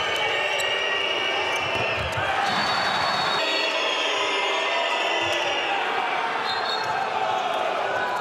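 Handball bouncing on the court floor during play, over steady crowd noise in an indoor arena.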